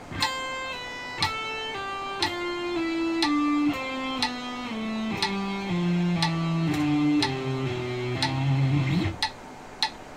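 Electric guitar playing a slow legato run of pull-offs at 60 bpm. The notes fall two to a beat, stepping down across the strings to a held low note that ends about a second before the end. A metronome clicks once a second.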